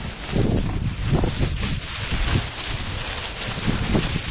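Plastic carrier bags rustling and crinkling in the hand as rubbish is tipped into a litter bin, in irregular crackles, with wind buffeting the microphone.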